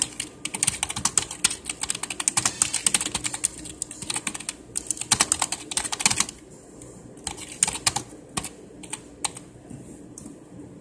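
Typing on a computer keyboard: a fast, dense run of keystrokes for about six seconds, then slower, scattered key presses.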